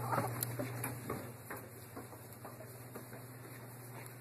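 Faint, irregular footsteps and handling knocks from someone walking with a handheld camera, over a steady low hum.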